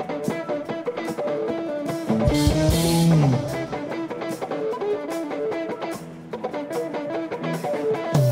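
Live band playing an instrumental passage of a worship song: electric guitars and a drum kit keeping a steady beat, with a low bass note sliding down in pitch a couple of seconds in.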